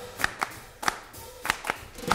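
Handclaps in an uneven, syncopated pattern, about five claps, in a break where the singing and band drop out of a gospel song.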